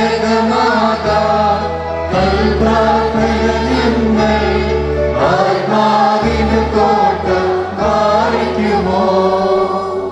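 A choir singing a chant-like liturgical hymn of the Holy Qurbana, over sustained low notes held about a second at a time.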